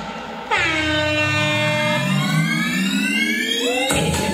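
A loud horn-like sound effect in the dance music. It starts suddenly about half a second in, dips in pitch at once, then slides slowly upward for about three seconds and cuts off abruptly as the beat comes back in.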